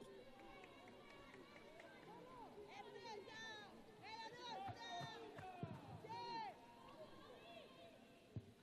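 Faint, distant voices of players calling out on the football pitch, with a few short shouts about halfway through, over low open-air ambience.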